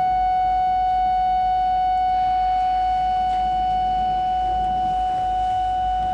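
Jupiter bayan (concert button accordion) holding a single long high note, steady in pitch and loudness, its upper overtones thinning out in the second half.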